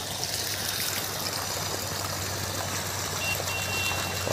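Steady rush of water flowing from a 900 W BLDC solar pump's outlet, with a low hum beneath it.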